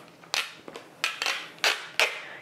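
Plastic packaging of a miso paste container crackling and snapping as it is opened by hand, with about four sharp snaps spaced well apart.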